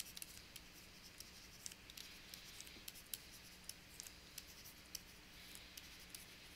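Faint scratching and light ticks of a stylus writing on a pen tablet, in short irregular strokes.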